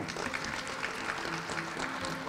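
Audience applause: many hands clapping in a dense, even patter.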